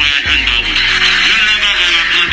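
Electronic background music with deep bass hits.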